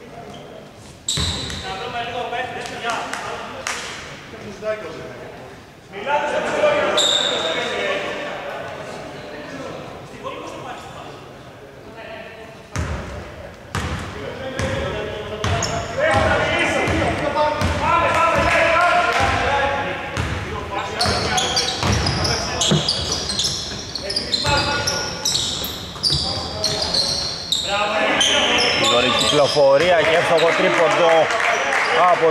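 A basketball bouncing on a hardwood court as players dribble it, with players' voices echoing in a large, nearly empty indoor arena.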